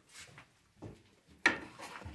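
A single sharp knock about one and a half seconds in, with a few faint rustles before it.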